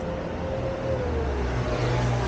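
A motor vehicle's engine running, a low rumble that strengthens about a second in while a higher tone in its sound slides downward.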